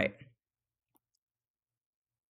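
A spoken word ends just after the start, then near silence with one faint, short click about a second in.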